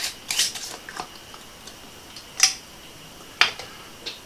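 Metal screw lid being twisted off a glass jar: several short clicks and scrapes spread over a few seconds, the last of them likely the lid being set down on a wooden cutting board.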